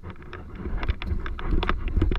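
Snowboard sliding and scraping down through snow, with a run of short crunches, as wind rumbles on the microphone and gets louder in the second half.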